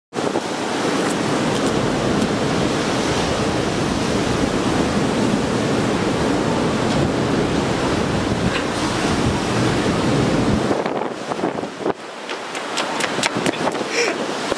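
Wind blowing hard across the microphone with sea surf behind it, a loud steady rush with a deep rumble. It drops away suddenly near the end, leaving a run of sharp footsteps on concrete coming closer.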